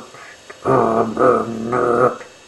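Dog-like growling vocal sound in three drawn-out, pitched parts, starting about two-thirds of a second in.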